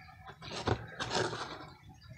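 Quiet handling noise as a steel food can is held and moved by hand: a sharp click about two thirds of a second in, then a brief scrape or rustle.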